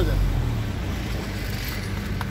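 Street traffic: a low vehicle rumble that fades over the first half second, leaving a steady traffic hum.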